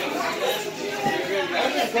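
Several people chattering, their voices overlapping, with no words standing out clearly.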